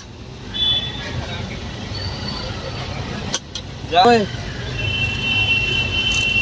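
Steady street traffic rumble, with a man's voice calling out a word about four seconds in, preceded by a couple of sharp clicks. A steady high-pitched tone starts near the end.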